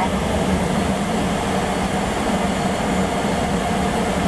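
Steady cabin noise of a Boeing 737 taxiing, its jet engines at idle, with a faint steady whine that grows clearer in the second half.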